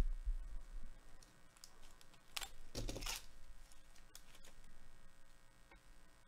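Quiet handling noises: gloved hands moving trading cards and foil pack wrappers on a table, with a soft thump at the start and a couple of brief rustles about halfway through.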